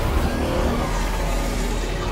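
Sound effect from an animated show's soundtrack: a steady, dense low rumble with a hiss above it, typical of a reality-warping effect.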